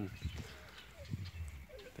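Goats bleating faintly: a couple of short calls, about a second in and again near the end.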